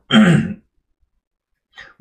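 A man's short, breathy vocal sound that falls in pitch, then a faint breath near the end.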